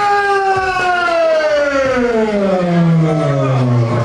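A siren wailing and winding down, its pitch falling steadily and smoothly over about four seconds.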